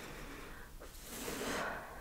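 Close-miked wet mouth sounds of chewing raw aloe vera gel, a soft hissing swell that grows louder about a second in.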